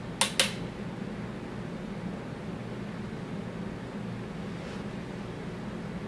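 A steady low background hum, like a fan, with two sharp clicks about a fifth of a second apart just after the start.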